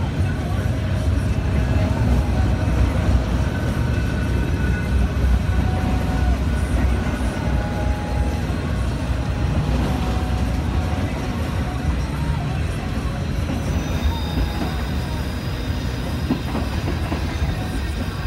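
Freight train cars, autoracks and then tank cars, rolling past close by with a steady, heavy low rumble of wheels on rail. Faint, wavering high squeals from the wheels come and go over it.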